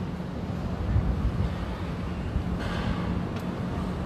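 Steady outdoor background rumble with wind buffeting the microphone, a faint steady hum beneath it, and a brief soft hiss about two and a half seconds in.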